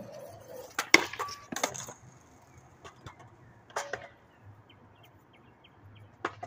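Skateboard knocking against concrete: a quick cluster of sharp wooden clacks about a second in and another single clack near four seconds.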